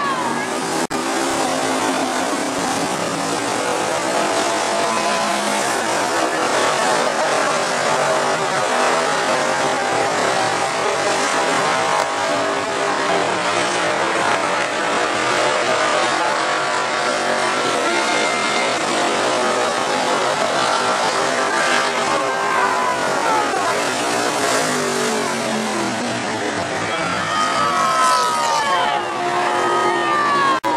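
A field of dirt-track race cars running at speed makes a steady, loud engine din. Individual engines rise and fall in pitch as cars pass, most clearly near the end.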